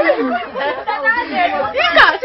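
Voices talking, several at once: chatter with no other sound standing out.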